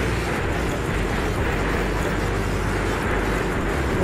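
Freight train of covered wagons passing close by on a steel truss bridge: a steady low rumble and rattle of wheels on rails that holds level throughout.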